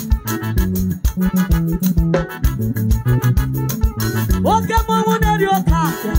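Live band playing upbeat African gospel praise music: electronic keyboards over a steady drum-kit beat and bass guitar, with a lead line that slides up and holds about four and a half seconds in.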